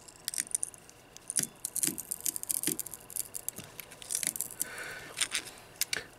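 Steel multi-tool pliers clamping down on a hard iron concretion: scattered small clicks and gritty scrapes as the jaws grip and shift on the nodule, which does not break.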